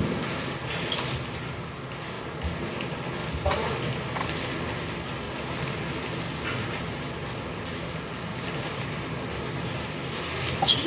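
Steady hiss with a faint hum from an old 1930s film soundtrack, with a few faint rustles and ticks.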